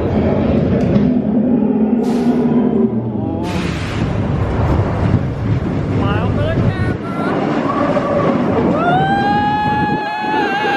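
Roller coaster train rumbling along the track through a dark tunnel, with a sudden louder surge of noise about three and a half seconds in. Near the end, a rider's long scream rises and holds as the train comes out into daylight.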